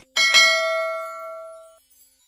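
A mouse-click sound effect followed by a bell ding, as on a subscribe-button animation. The bell rings with several tones at once and fades out over about a second and a half.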